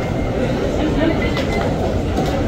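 Crowded escalator running with a steady low rumble, under the mixed chatter of the many people riding it.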